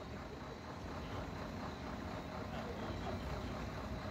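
Steady, fairly faint low rumble of road traffic, with no distinct events.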